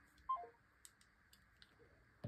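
A short, faint electronic tone falling in pitch as a smartphone call is hung up, followed by a few faint clicks.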